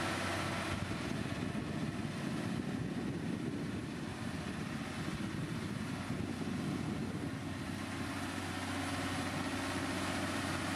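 LiuGong motor grader's diesel engine running steadily under load, a continuous low hum with a rough rumble, as the grader moves along with its blade pushing gravel.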